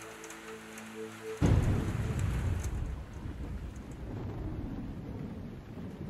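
Rain falling, then a sudden loud crack of thunder about a second and a half in, which rumbles on as it fades under the steady rain.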